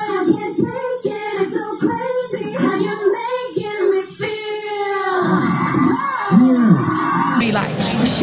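Female vocal group singing live into microphones in harmony, with a vocal run whose pitch slides up and down over a couple of seconds near the middle of the passage. Near the end the sound cuts abruptly to a brighter, clearer recording of singing.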